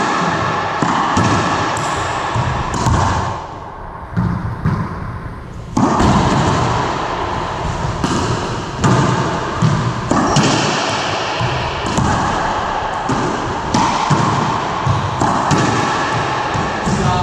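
Racquetball rally: a hollow rubber ball struck by racquets and smacking off the walls and floor again and again, each hit echoing in the enclosed court, with a quieter spell about four to six seconds in.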